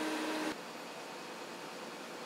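Faint steady hum and hiss of concrete pumping machinery. The hum stops about half a second in, leaving a quieter, even hiss.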